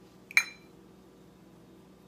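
A single sharp clink with a short ring about a third of a second in: a spice jar knocking against something hard as cayenne is shaken out. Otherwise only a faint steady hum.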